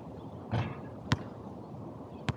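A basketball reaching the hoop with a soft hit about half a second in, then dropping and bouncing once sharply on the outdoor asphalt court about a second in.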